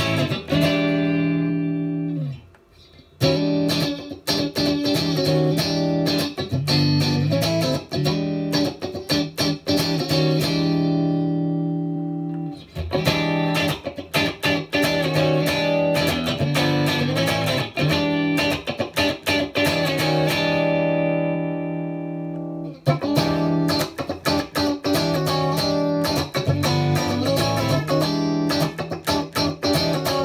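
Squier Contemporary Stratocaster HSS electric guitar played through an amp: short picked passages on one pickup position after another, moving from the neck pickup toward the bridge humbucker. Brief breaks about three, twelve and twenty-three seconds in mark the moves of the pickup selector switch.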